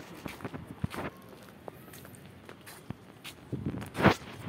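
Footsteps on a concrete rooftop floor: a scatter of soft, irregular steps and small clicks.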